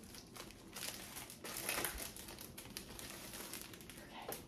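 Paper packaging of a pair of nylon stockings crinkling as it is handled, in irregular crackles that are loudest about halfway through.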